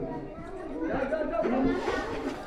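Indistinct background chatter of several voices, moderately loud and wavering.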